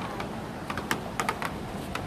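Footsteps on the wooden plank deck of a steel truss bridge: about six light, irregular clicks in the second half, over steady background noise.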